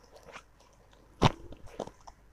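Faint rustling and crinkling of a silk saree being handled, with small clicks and one sharp, brief crackle a little past the middle.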